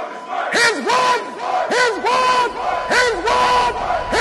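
A group of men shouting together in unison, short loud shouts repeated about twice a second, each rising and falling in pitch.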